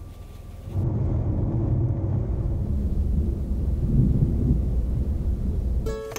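A loud, steady low rumble that starts suddenly about a second in and carries on evenly, its sound sitting almost all in the low range.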